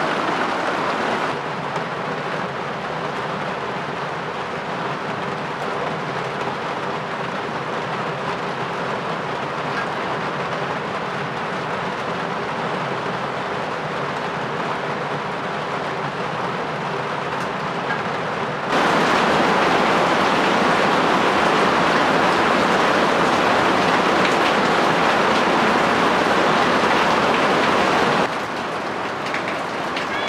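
Steady rain, an even hiss with no gaps. It steps abruptly louder about two-thirds of the way through and drops back just before the end.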